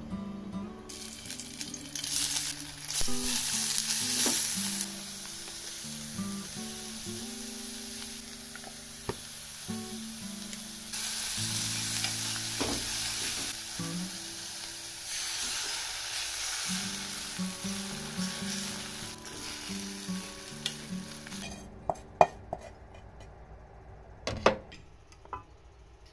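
Spinach and sausage slices sizzling in hot oil in a frying pan as they are stir-fried with chopsticks. The sizzle starts about a second in, is loudest for a few seconds soon after, swells again about halfway through and dies away a couple of seconds before the end, followed by a few sharp clatters of utensils.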